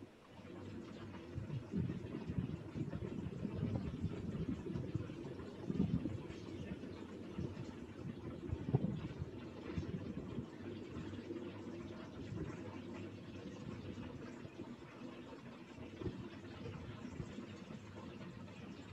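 Low, uneven rumbling background noise that rises and falls in level, with no speech.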